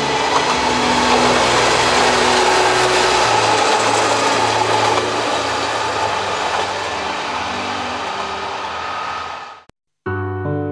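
Joso Line diesel railcar approaching and running past on the track: a loud steady rush of engine and wheel noise that builds over the first few seconds, then eases and cuts off abruptly near the end.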